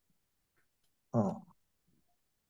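A man's single short hesitant "uh" about a second in, with near silence before and after it.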